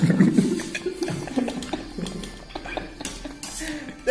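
A metal spoon clinking and scraping against a steel plate while eating, in a run of irregular sharp clicks.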